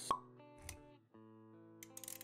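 Intro-animation sound design: a sharp pop just after the start, a low thud a little after half a second, then quiet sustained musical notes with a few clicks near the end.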